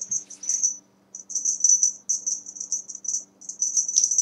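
A cat wand toy jingling with a high, shimmering rattle as it is shaken over a playing cat, in quick repeated bursts with a short break about a second in.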